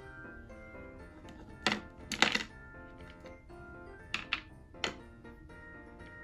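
Background music, with a few sharp clacks of small plastic toy figures being picked up and set down on a table. The loudest clacks come about two seconds in, and a few more come around four to five seconds in.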